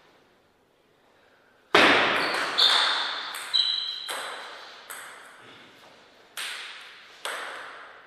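Table tennis ball strikes. After a quiet start, a quick run of sharp pinging clicks comes about two seconds in, then a few single knocks about a second apart, each trailing off in the echo of a large hall.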